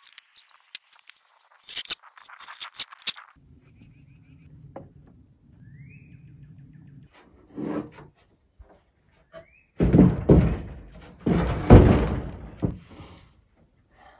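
Wooden bench frame being handled and turned over: a few sharp knocks early on, then a loud run of thuds and scraping wood in the second half.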